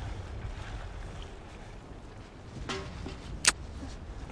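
Battlefield ambience from a film soundtrack. A low rumble eases off about a second and a half in, and a single sharp crack rings out near the end, with a fainter click shortly before it.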